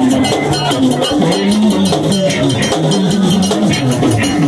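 Live Vodou ceremonial music: a man singing into a microphone over metallic percussion struck in a fast, steady beat.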